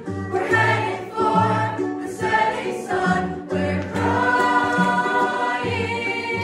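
Mixed high-school show choir singing a musical-theatre number in harmony.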